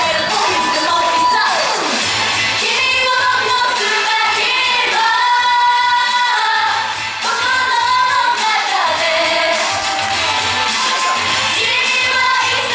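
Japanese idol girl group singing a pop song live into handheld microphones over an amplified pop backing track with a steady bass pulse.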